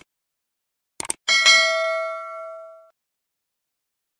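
Subscribe-button sound effect: two quick mouse clicks about a second in, then a bright notification-bell ding that rings and fades out over about a second and a half.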